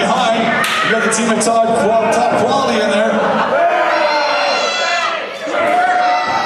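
Several sharp slaps and thuds of wrestling strikes in the ring over the first two seconds, amid men's shouting voices echoing in a hall.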